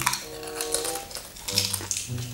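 Potato chips crunching as they are bitten and chewed, a few irregular crunches over steady background music.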